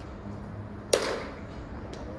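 A single sharp crack of a baseball bat striking a ball about a second in, with a short fading ring.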